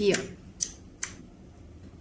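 Three-position toggle switch on a RadioLink AT9S Pro transmitter being flicked: two small clicks about half a second apart.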